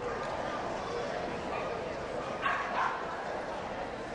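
A dog barking twice in quick succession, two short sharp barks a little past the middle, over a steady murmur of background voices.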